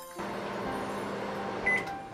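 Microwave oven running with a steady hum, then a single short beep near the end.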